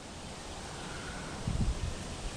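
Steady outdoor background hiss in a backyard, with a few low rumbles near the end, as of wind on the microphone.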